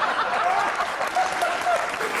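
Audience applauding, with laughter and scattered voices mixed in, in reaction to a joke's punchline.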